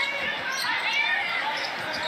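On-court sounds of a basketball game on a hardwood floor: the ball bouncing and sneakers squeaking in short high squeals during a scramble for the ball, heard in a large arena.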